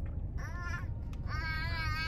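A baby's high-pitched voice: a short rising squeal about half a second in, then a longer held squeal from a bit past one second, over a steady low rumble.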